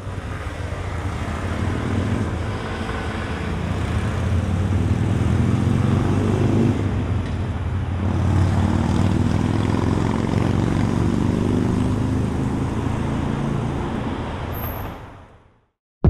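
City street traffic: a steady wash of road noise with vehicle engines running by. It builds up over the first couple of seconds and fades out to silence about a second before the end.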